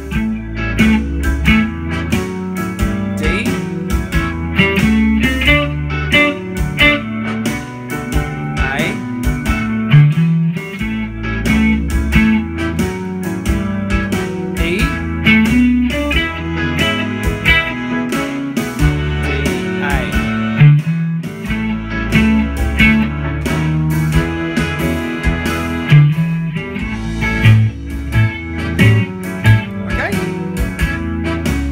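Stratocaster-style electric guitar playing a blues lead in the A minor pentatonic scale over a 12-bar blues backing track in A.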